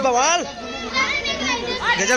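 Voices talking and calling over each other, high children's voices among them: the chatter of a crowded gathering.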